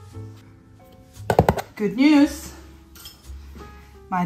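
Soft background piano music fading out, then a couple of sharp clinks of dishware about a second and a half in, followed by a short voiced sound.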